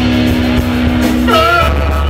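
Live punk rock band playing loudly: guitars hold a sustained note over heavy bass and drums, and a vocal line comes in about one and a half seconds in.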